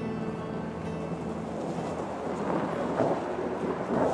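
Soft background music with held notes fades out in the first second or so. After that, a steady outdoor noise without clear tones grows louder toward the end.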